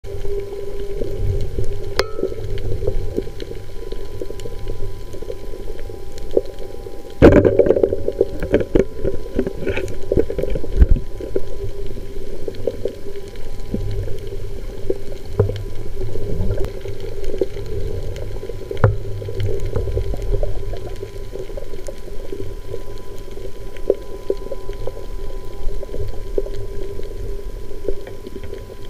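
Underwater sound picked up by a camera in a waterproof case: a steady muffled rush with a constant hum, scattered clicks and crackles, and one sharp knock about seven seconds in.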